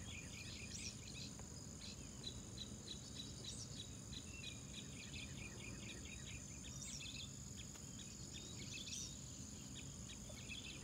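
Insects chirping outdoors: a steady high-pitched whine under a fast run of short, repeated chirps, with a few brief higher chirps scattered through.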